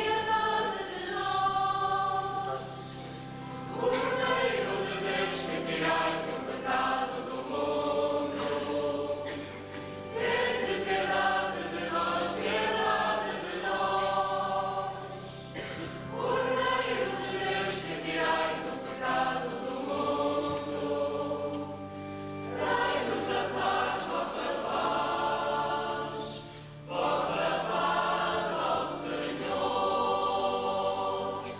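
Mixed church choir of men and women singing in harmony, in phrases a few seconds long with short breaks between.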